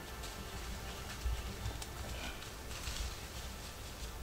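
Light rustling and crackling in dry leaf litter, with a short bird chirp a little past the middle, over a low wind rumble.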